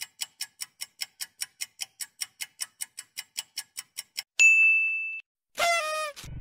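Quiz countdown timer sound effect: quick, even ticks about five a second for roughly four seconds, then a single bell-like ding that rings for under a second as time runs out. It is followed near the end by a short tone that falls in pitch.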